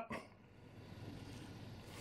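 Very quiet room tone, with a brief faint sound at the very start as the preceding word trails off.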